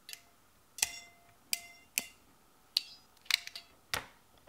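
Ratcheting MC4 crimping tool and metal crimp terminal: a string of about seven sharp metallic clicks, irregularly spaced, some with a brief ring, as the terminal is set into the die and the jaws are worked.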